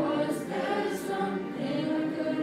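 Boys' choir singing held notes together, with crisp 's' consonants about half a second and one second in.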